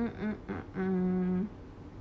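A woman humming with closed lips: a few short, wavering notes, then one steady held 'mmm' that stops about three quarters of the way through.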